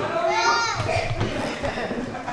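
A spectator's high-pitched shout about half a second in, rising and falling in pitch, amid quieter crowd noise in a hall.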